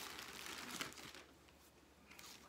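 Faint crinkling and rustling of plastic packaging being handled, fading away after about a second.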